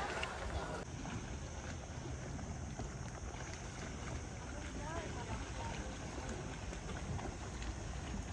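Outdoor ambience: wind noise on the microphone as a steady low rumble, with a faint steady high hiss and a faint distant voice about midway.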